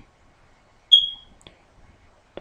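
A single short, high electronic beep about a second in, fading out quickly, followed by a faint click.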